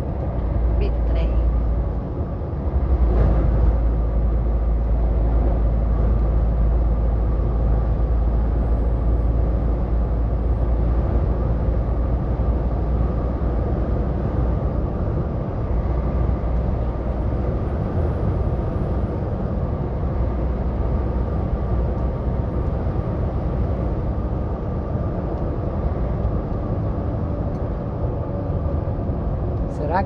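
Steady engine drone and road noise inside a truck cab cruising on a highway, with a deep low rumble throughout.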